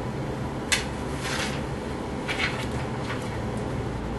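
Steady low room hum with small handling noises: a sharp click under a second in, then brief rustling and a few light ticks.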